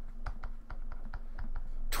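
Light, irregular clicks and taps of a stylus on a drawing tablet during handwriting, several a second, over a faint steady hum.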